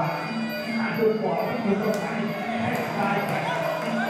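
Live Thai boxing ring music (sarama) playing with a steady beat, a short high cymbal-like tick repeating about twice a second, over a crowd's voices shouting.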